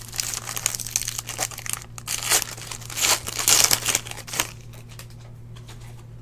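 Foil wrapper of a Panini Origins football card pack being torn open and crinkled by hand, a dense run of crinkling that is loudest about three to four seconds in and stops about four and a half seconds in.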